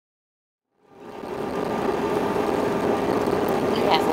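Silence, then about a second in the cabin noise of an airliner on the runway just after landing fades in: a steady rushing noise with a low steady hum.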